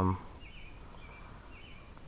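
A few faint, short, high bird chirps over quiet lakeside background, after a brief spoken 'um' at the start.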